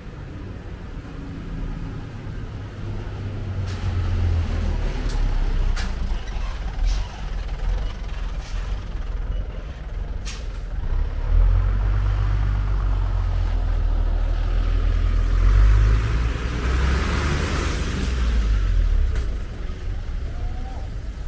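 Street traffic noise: a low, uneven rumble, with a vehicle passing by as a broad hiss that swells and fades about three-quarters of the way through.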